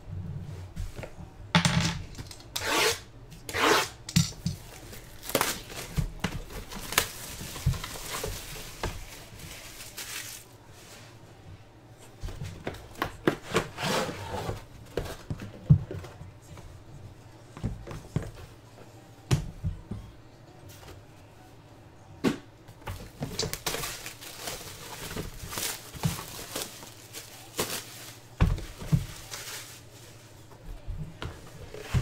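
Shrink-wrap plastic being torn and peeled off boxed trading-card cases, crackling and rustling in irregular bursts, with occasional knocks as the boxes are handled.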